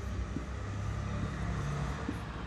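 Steady low background rumble with a faint hum: room noise between spoken words.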